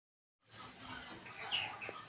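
Faint bird calls in the background: a few short chirps, the clearest about a second and a half in.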